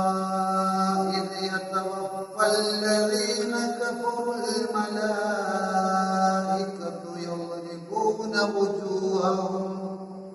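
A man reciting the Quran in melodic tajweed chant, a single male voice drawing out long held notes. A new phrase begins about two seconds in and another near eight seconds, and the voice tails off at the end.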